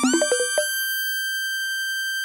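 Electronic dub music: a quick run of short synth hits with low drum thumps stops about half a second in, leaving one high, steady synthesizer tone held to the end.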